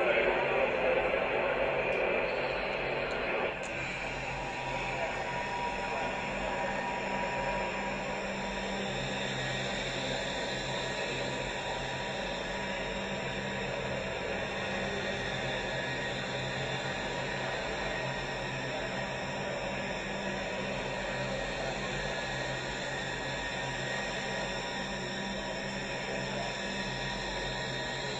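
Slow ambient music with long held tones, fuller and louder for the first three or four seconds, then steady and subdued.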